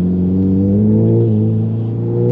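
Tuned Volkswagen Golf GTI's turbocharged four-cylinder engine pulling under acceleration in one gear, its pitch rising steadily, heard from inside the cabin.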